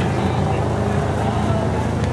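Rock crawler's engine idling steadily, with faint voices in the background.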